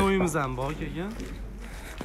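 A man's voice talking for about a second, then quieter background.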